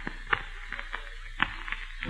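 Faint hiss and low hum of an old radio recording, with two sharp clicks or knocks about a second apart.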